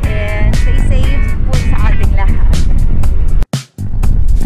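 Background music with a singing voice over a steady beat. It cuts out abruptly for a moment near the end, then carries on.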